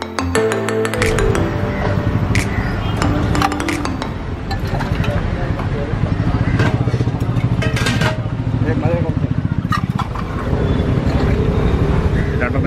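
Background music cuts off within the first second. A motor vehicle engine keeps running close by, with sharp clinks of glasses and a steel tumbler and people's voices over it.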